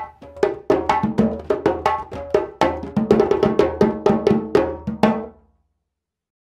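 Djembe ensemble playing a ternary groove of sharp open, tone and slap hand strokes. It is a type 2 ternary groove, with the second fundamental cadence heard in it. The playing stops abruptly about five and a half seconds in.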